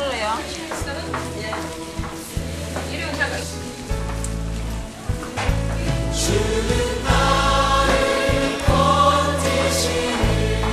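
Background music with voices singing, growing louder and fuller about halfway through.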